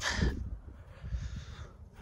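Wind buffeting the microphone in an uneven low rumble, with a faint hiss about a second in.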